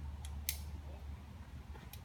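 Climbing hardware on a harness rack clinking: a few sharp metallic clicks, the loudest about half a second in, another near the end. A low rumble underneath stops a little after a second.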